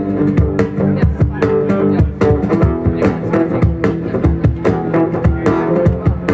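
A live band playing: guitar chords and bass notes over a steady percussion beat.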